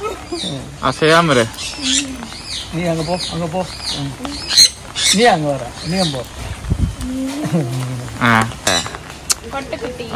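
Sun conures calling: a string of short, high, rising-and-falling chirps, broken by a few harsh squawks about halfway through and again near the end, with people's voices underneath.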